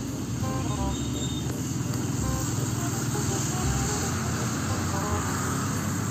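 Road traffic: a heavy Mitsubishi Fuso truck's engine running with motorcycles riding past, a steady rumble. A few short high beeps sound near the start.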